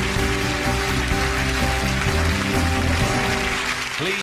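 Band music playing with audience applause over it, a dense even clatter of clapping under the tune.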